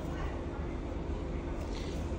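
Steady low hum and even background room noise at a repair bench, with no distinct event.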